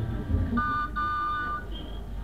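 The end of an organ music bridge giving way to a street-traffic sound effect: a low engine rumble, with a held horn-like tone from about half a second in that lasts about a second.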